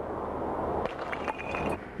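Steady outdoor street and traffic noise, with a few faint knocks about a second in as a cement block dropped from a rooftop lands on the pavement.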